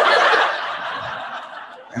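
Audience laughing at a comedian's punchline, loudest at the start and fading away over the two seconds.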